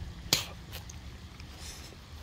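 A small hand slapping into a shallow puddle on stone paving, one sharp smack about a third of a second in, then a short, softer splash near the end. A low steady rumble runs underneath.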